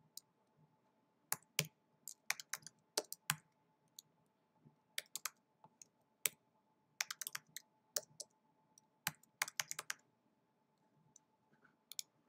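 Computer keyboard typing, keystrokes coming in irregular bursts of quick clicks with short pauses, then about two seconds without keystrokes near the end.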